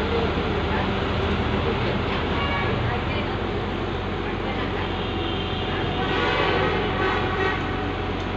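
Steady rumble of vehicle engines and traffic noise, with a short pitched blare, like a horn, rising above it about six seconds in.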